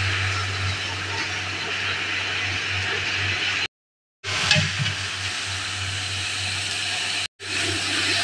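Hot oil sizzling in a large aluminium pot as spices are added and stirred with a metal ladle: a steady hiss with a low hum underneath. It breaks off into silence briefly about four seconds in and again near the end.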